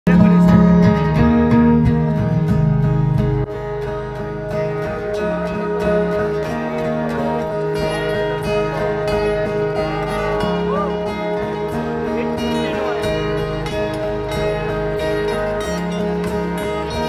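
Live acoustic guitar music played through a concert sound system and heard from the audience, with voices over it. It is louder for the first few seconds, then drops to a steadier level.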